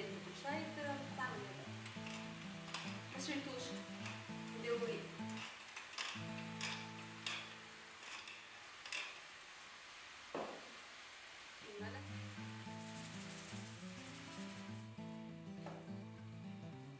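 Background music over onions sizzling in olive oil in a frying pan, stirred with a utensil that gives a string of sharp scraping clicks against the pan.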